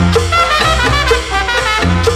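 Salsa orchestra recording: a horn section plays a phrase with sliding notes over bass and percussion.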